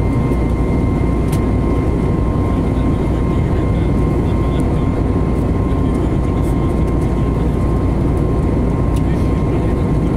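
Jet airliner cabin noise in flight: a loud, steady low roar of the turbofan engines and airflow, with a thin steady whine running on top.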